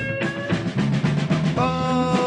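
A rock band playing with drum kit and electric guitar; a long held note comes in about one and a half seconds in.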